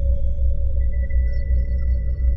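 Ambient meditation drone music: a deep low hum pulsing evenly a few times a second under a steady mid-pitched tone, with a thin high tone entering about a second in.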